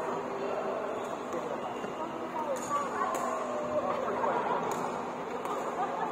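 Players' voices chatting in a large, echoing badminton hall, with a few sharp clicks from the courts now and then.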